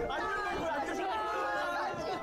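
Several young men's voices talking over one another in a group, a babble of chatter from the show's audio track.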